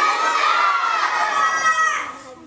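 A large group of young children shouting a rehearsed reply together, "Black belt, excellence, sir!", in one long drawn-out chorus that stops near the end.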